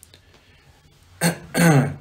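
A man clearing his throat about a second in: a short first rasp, then a longer, louder voiced one.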